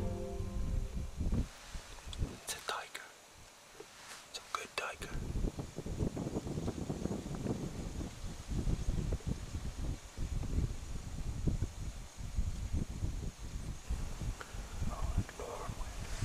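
Hushed whispering from hunters in a blind, over a low, uneven rumble on the microphone, with a few sharp clicks a few seconds in.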